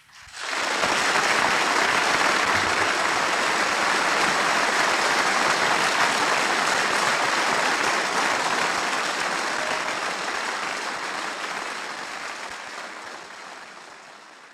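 Audience applauding. It swells in suddenly out of silence, holds steady for several seconds, then fades out gradually over the second half.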